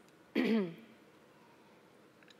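A woman clearing her throat once, briefly, about half a second in.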